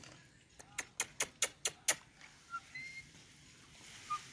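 A quick run of about seven sharp clicks in the first half, followed by a few faint, short chirps.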